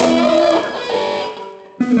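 Rock band playing live with electric guitars: chords ring out and fade away to a brief break, then the full band comes back in suddenly near the end.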